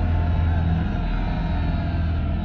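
Cinematic trailer sound design: a deep, steady low rumble with a held musical chord above it.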